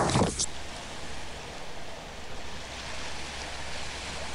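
A brief loud knock as a hand grabs the handheld camera, then a steady rushing hiss of wind and sea at a snowy shore.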